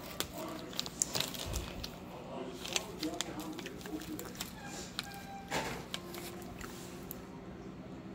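Scattered small clicks and crinkles of a jelly bean bag being handled as a bean is picked out, with a brief rustle about five and a half seconds in. Faint voices and a low steady hum sit underneath.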